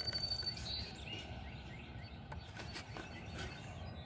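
Quiet outdoor background noise. A bird gives one high steady whistle just after the start, then a few short chirps. Faint scattered clicks and rustles run through it, fitting carded toy cars being flipped through in a cardboard box.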